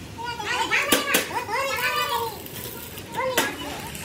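High-pitched children's voices calling and chattering, with two sharp knocks about a second in and another near the end.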